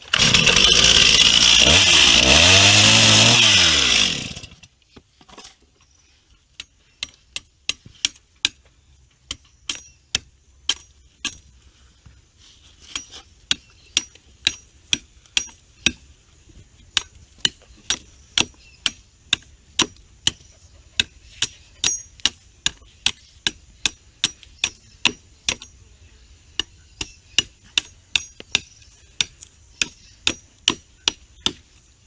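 A two-stroke chainsaw runs loud through a cut for about four seconds, its pitch rising and falling, then cuts off. After that a machete chops steadily into a wooden stick, about two sharp strikes a second.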